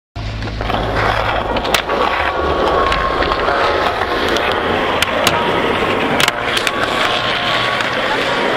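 Skateboard wheels rolling over rough asphalt: a steady grinding rumble with a few sharp clicks scattered through it.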